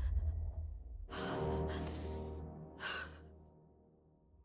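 Three short, breathy exhalations, two close together a second or so in and a third near three seconds, over the low rumble of dramatic trailer music that fades out toward the end.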